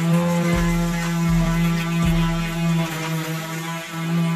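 Small electric motor of a homemade battery-powered flexible-shaft rotary tool running with a steady hum, its sanding drum pressed against the jaws of a pair of pliers.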